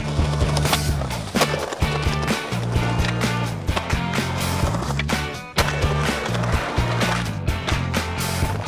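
Skateboard wheels rolling on concrete, with several sharp clacks of the board popping and landing, over a music soundtrack that plays throughout.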